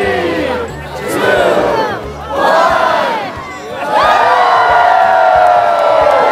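A large crowd shouting together three times in short bursts, then breaking into long, loud cheering about four seconds in as the town Christmas tree's lights come on.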